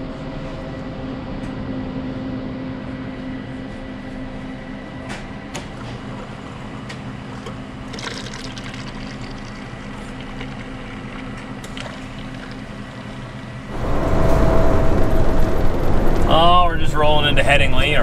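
Schaerer bean-to-cup coffee machine running with a steady hum as coffee streams into a paper cup. About 14 s in, this gives way to the louder steady running noise of a truck cab on the road.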